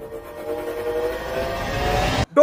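A dramatic tension sound effect laid over the film: a horn-like tone slowly rising in pitch over a swelling rush of noise, growing louder until it cuts off abruptly.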